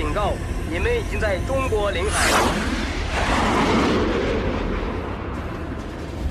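Fighter jet passing low overhead: a sharp falling whoosh about two seconds in, then a rumble that fades away, over a steady low drone. Voices are heard before the pass.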